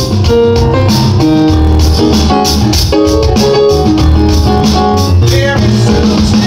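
An electronic drum kit and a keyboard playing a song together, the keyboard holding chords and short notes over a steady drum beat.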